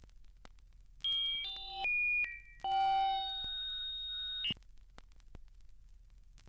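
A short electronic chime-like musical sting: three quick pitched notes about a second in, a brief pause, then one long held note that cuts off suddenly.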